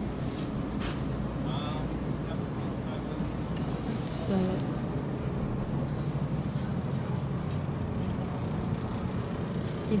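Steady low hum of a grocery store's background noise, with faint voices in short snatches.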